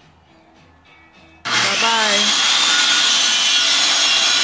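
A handheld circular saw starts about a second and a half in, its high whine climbing to speed, then runs loud and steady as it cuts a wooden board.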